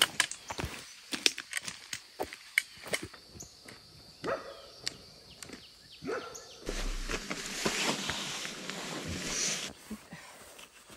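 Footsteps crunching on a gravel hiking track, irregular crunches and clicks for the first six seconds or so. Near the end a steady rushing noise takes over for about three seconds.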